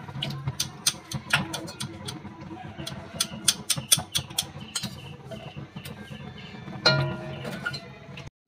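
Light clicks and taps of a thin stick knocking against a steel pot and plate as syrup-soaked jalebi are lifted out onto the plate, scattered irregularly over a low steady hum.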